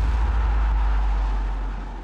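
Produced transition sound effect: a deep, steady rumble with a rushing noise over it, fading near the end.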